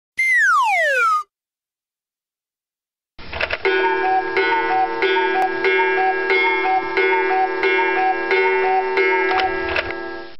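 A whistle-like sound effect sliding steeply down in pitch for about a second. After a two-second pause, a music track with a steady ticking beat and a repeated short melody starts about three seconds in.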